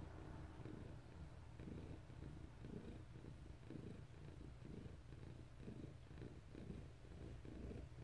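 Domestic cat purring close to the microphone: a faint, low rumble that pulses about twice a second.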